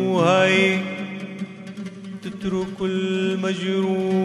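Arabic song music: a melodic line that slides and bends between notes over steady held tones.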